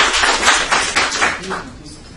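Audience clapping, fading away about a second and a half in.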